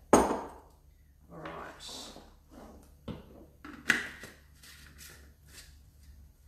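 Knocks and clatter of jars and a small blender cup being set down and handled on a kitchen bench: a sharp knock just after the start, a second about four seconds in, and lighter clinks and rustles between.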